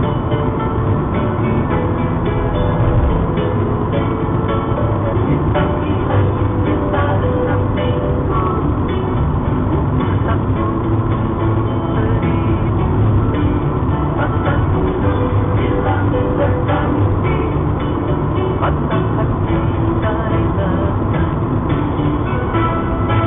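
Music playing from the car's CD player in the cabin of a moving car, over steady road and engine noise.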